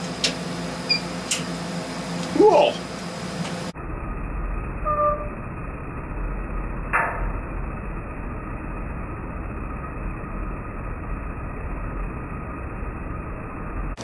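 Steady low hum with a single short pop about seven seconds in, as a CO2 laser pulse fires into masking tape on the laser head. There is no whoosh of flame, the sign the owner gives of a weakening laser tube.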